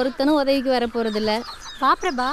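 Hens clucking in a quick run of short calls, then a brief pause and a couple more calls near the end.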